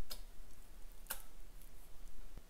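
Relay switched by a Micro 810 PLC clicking twice, about a second apart, as it cycles on and off; each pull-in counts one machine cycle.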